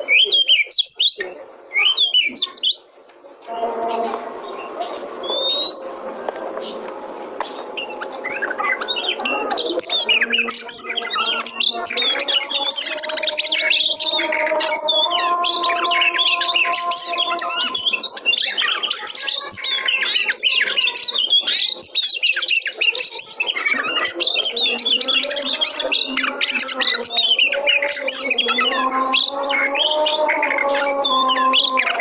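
Oriental magpie-robin (kacer) singing: a rapid, varied stream of loud whistles and chattering notes. It starts with a few separate phrases and a short pause, then turns dense and continuous from about four seconds in.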